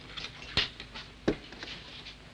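Light clinks and taps of crockery and cutlery at a meal table: a handful of short, sharp knocks, the loudest a little past halfway.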